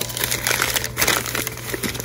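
Packing paper crinkling and rustling in quick, irregular crackles as hands unwrap a small glass dish from it.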